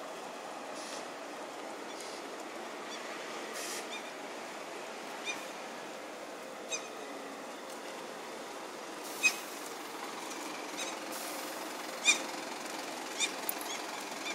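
Street sound at a bus stop: a steady hum of city buses and traffic, with several short, sharp chirps over it, the loudest about nine and twelve seconds in.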